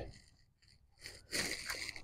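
Near silence for about a second, then a faint breathy noise from a person close to the microphone.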